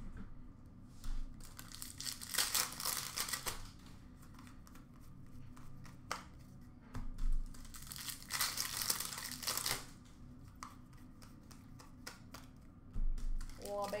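Hockey card pack wrappers being torn open and crumpled, in several bursts of crinkling a few seconds apart.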